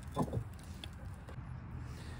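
Steel hitch ball-mount shank being pushed into a 2-inch trailer hitch receiver: a couple of light metal knocks near the start, then only a low steady background.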